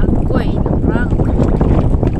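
Wind buffeting the microphone: a loud, steady, low rumbling roar, with faint voices behind it.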